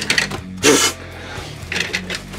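Die-cast toy car rolling down plastic Hot Wheels track, its small wheels making a rapid rattle over the track.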